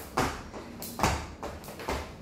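A skipping rope slapping a hard tiled floor three times at an even pace, each slap with a dull thud of the jumper landing. The arms are crossed for a crisscross skip.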